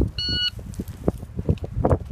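Electronic shot timer giving its start beep, one short steady tone, the signal for the shooter to begin the stage. A few short dull thuds follow in the second half.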